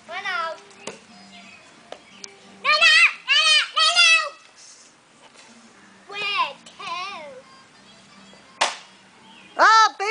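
Children's high-pitched, sing-song calls and shouts in bursts, with one sharp crack about eight and a half seconds in from a plastic T-ball bat striking.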